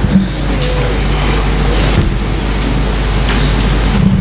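Steady rustling and shuffling from a congregation, with Bible pages being turned as they find the scripture reading.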